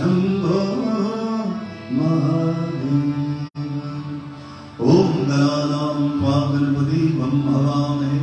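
A man singing a Hindu devotional chant while playing a harmonium, which holds steady notes under the voice. The sound cuts out for an instant about three and a half seconds in.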